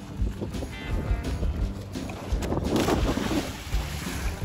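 A person jumping off a wooden dock into lake water, with a splash about two and a half to three seconds in, over wind buffeting the microphone.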